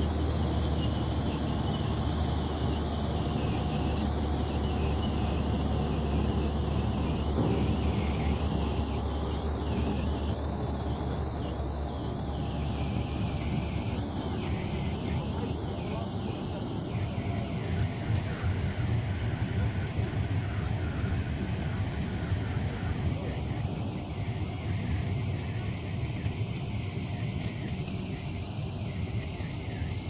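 Wheeled armoured personnel carrier's engine running at idle close by, a steady low hum that weakens after about twelve seconds as lower engine rumble goes on.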